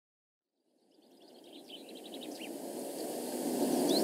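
Outdoor ambience fading in from silence: a steady background rush with small birds chirping in quick high trills.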